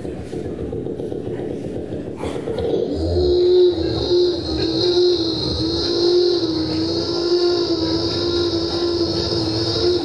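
Beatboxer's mouth-made motor imitation into a cupped microphone: a steady, slightly wavering hummed drone with a high hissing whistle held above it, settling in about three seconds in after a short sharp burst.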